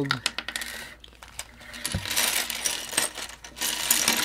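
Small plastic LEGO bricks tipped out of a clear plastic case, clattering and rattling onto a wooden tabletop, with a knock about halfway through and a quick run of clicks after it.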